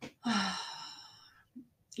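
A woman's sigh: a brief voiced start that trails off into an outward breath, fading over about a second.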